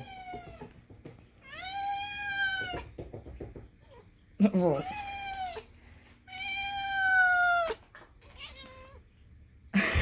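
Domestic cat meowing for food: two long drawn-out meows about five seconds apart, with a shorter call between them and a faint one near the end.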